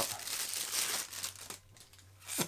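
Clear plastic wrapping crinkling and crackling as a camera lens is pulled out of it by hand, dying away about a second and a half in.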